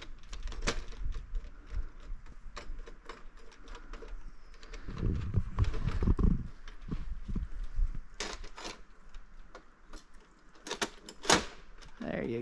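Scattered metallic clicks and knocks of hand tools and mounting hardware as a solar street light is fastened to a tree trunk from a ladder, with a low rumble about five seconds in and the sharpest clicks near the end.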